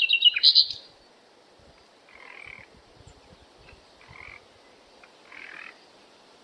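Outdoor nature soundtrack of frogs and birds calling: a loud flurry of high chirps in the first second, then a quieter call that repeats about every one and a half to two seconds.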